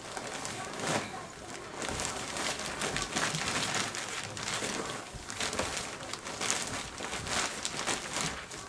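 Plastic tarp and plastic compost bag rustling and crinkling in irregular bursts as soil is mixed by hand.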